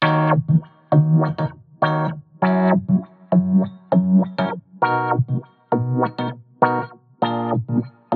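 Rhodes electric piano playing short chord stabs, about two a second, over a low bass note. It runs through FX Modulator's resonant low-pass filter, swept in quarter notes in time with the song for a wah-wah effect.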